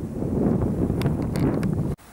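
Wind buffeting the camera microphone: a loud, low rumble with a few light clicks near the middle, cut off abruptly at the end.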